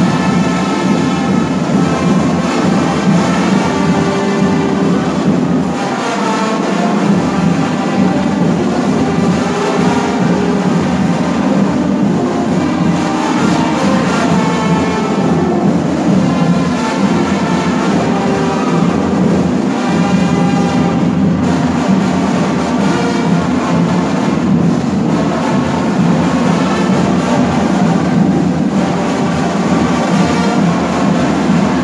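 A fanfarra (Brazilian school marching band) playing live: brass carrying a melody over the band's drums, loud and continuous.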